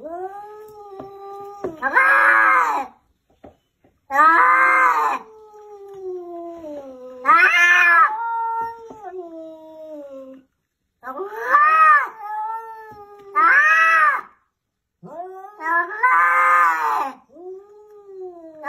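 Two cats, a white cat and an orange tabby, caterwauling at each other in a standoff. Six loud yowls that rise and fall come a few seconds apart, with lower, drawn-out moaning between them.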